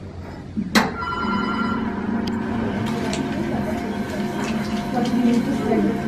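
Small electric potter's wheel switched on with a click, then its motor running with a steady hum and whine as clay is centred on the spinning wheel head.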